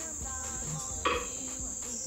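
Steady high-pitched insect chirring, with soft background music beneath it and a brief knock about a second in.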